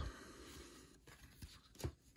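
Faint papery rustle of baseball trading cards being shuffled through by hand, with a few light ticks in the second half as cards slide and are set down.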